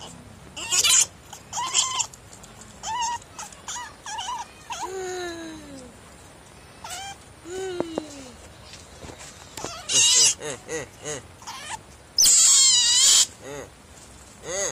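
Young pet otter squeaking and chirping in a run of short, high calls, some sliding down in pitch, with a long, loud shrill squeal about twelve seconds in.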